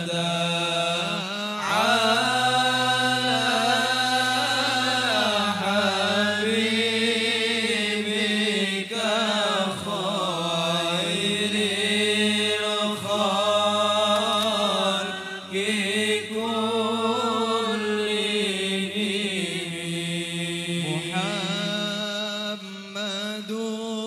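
Men chanting an Arabic qasida (sholawat) without instruments through microphones: one voice sings long, ornamented lines while a low note is held steadily beneath it.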